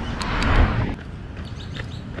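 A rush of rustling and wind noise from the action camera being handled and set down, loudest about half a second in, then a quieter outdoor background.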